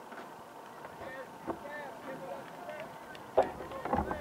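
Distant shouts and calls of players and spectators across an outdoor soccer field, short pitched cries coming one after another, with a sharp thump about three and a half seconds in.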